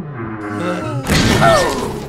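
Cartoon crash effect of a heap of metal pipes and machinery collapsing, with a loud smashing clatter about a second in, over background music.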